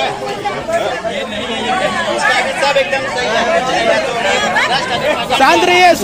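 A crowd of people chattering, many voices talking over one another.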